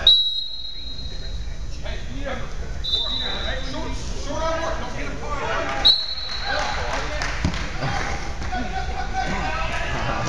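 Referee's whistle blown three times: a long blast of about a second and a half right at the start, a shorter one about three seconds in, and a quick one about six seconds in. Around it, voices and thuds carry through the gym.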